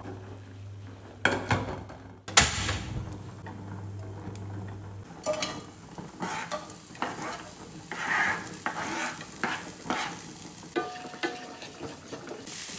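A pot of black beans at a rolling boil, with a low steady hum and two sharp knocks, the louder about two and a half seconds in. After about five seconds, chopped shallots and garlic are tipped into an oiled frying pan and sizzle as a spatula stirs them, tapping and scraping against the pan.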